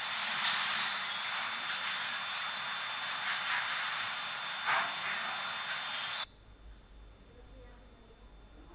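Loud, steady recording hiss with a thin high whine, boosted so that a faint voice-like sound inside it, captioned as saying "buena tarde", can be heard; it is offered as a spirit voice (EVP). The hiss cuts off suddenly about six seconds in, leaving quiet room tone.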